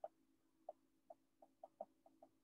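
Near silence with a faint steady hum and about a dozen faint, short, irregular ticks: a stylus touching down and writing on an iPad's glass screen.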